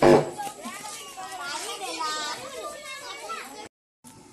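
A group of children shouting and chattering together, opening with one sharp bang. The sound cuts off abruptly just before the end.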